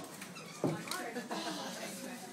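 Indistinct voices talking, with a sharper, louder sound about two-thirds of a second in.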